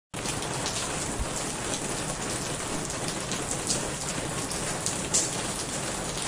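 Steady rain falling, an even hiss peppered with frequent sharper drop hits.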